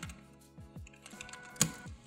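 Computer keyboard typing: a few separate keystrokes, the loudest click about one and a half seconds in, over background music with a steady beat.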